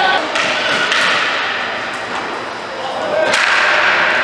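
Live ball hockey play in an arena: sharp cracks of sticks and the ball against sticks, goalie pads and boards over a steady hall din, with the loudest crack about three seconds in.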